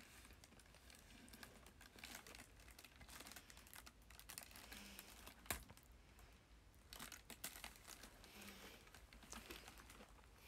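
Near silence broken by faint handling noises: small clicks and crinkling as a piece of chocolate and its packaging are picked at by hand, with one sharper click about halfway through.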